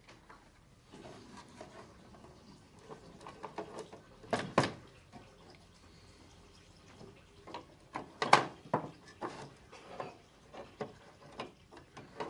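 Light wooden clicks and knocks as a thin wooden strip is worked loose and pulled out from inside an antique wooden box, with two sharper knocks about four and eight seconds in.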